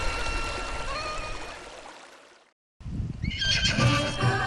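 Bagpipe music fades out over the first two seconds to a brief silence. About three seconds in, a horse whinnies.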